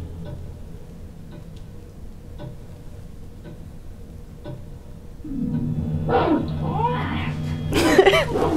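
Soundtrack of a TV ad played through a screen's speaker in a room: quiet low sustained music, then from about five seconds in a cat meowing, and a sudden loud sound near the end.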